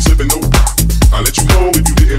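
House music mixed by a DJ: a steady, driving dance beat with deep bass and crisp, evenly spaced high percussion hits.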